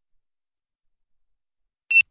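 Silence, then near the end a single short, high electronic beep from a sailing race-timer app.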